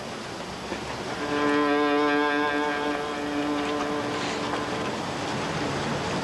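Violin playing one long, steady low note, starting about a second in and held for roughly four seconds, over a background of outdoor noise.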